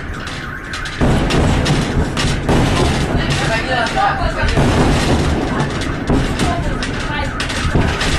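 Shock wave from the Chelyabinsk meteor's airburst arriving: a sudden boom about a second in, followed by continuous low rumbling.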